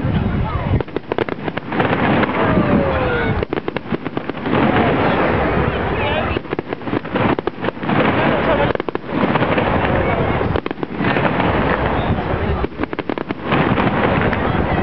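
Aerial fireworks shells bursting, a dense run of bangs and crackling that keeps going with short lulls, heard through a camera's built-in microphone.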